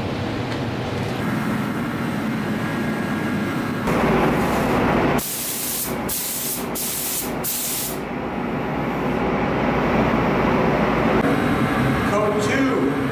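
Gravity-feed paint spray gun spraying red base coat onto a spray-out card: four short hissing passes, each under a second, a little past the middle, over a steady background rumble.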